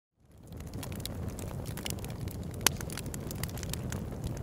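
Fire crackling: a low rumble with scattered sharp pops and snaps. It fades in over the first half-second, and one pop about two and a half seconds in is louder than the rest.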